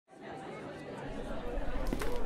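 Indistinct chatter of several voices fading in from silence, with a low rumble coming in about a second in.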